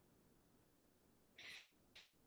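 Near silence: room tone, with one faint brief sound about one and a half seconds in.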